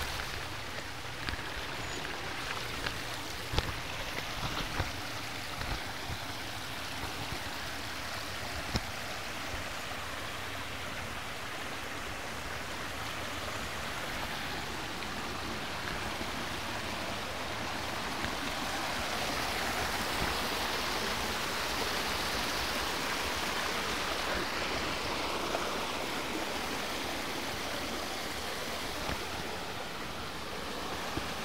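Steady rushing of flowing water from a small stream cascade over rocks, a little louder about two-thirds of the way through. A few short clicks in the first several seconds.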